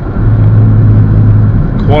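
Steady low drone of a VW Jetta's engine and road noise heard inside the cabin while driving. It gets louder a fraction of a second in and then holds even.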